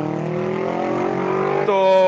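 A motor vehicle's engine speeding up, its note rising slowly and steadily, with a man's voice drawing out one held syllable near the end.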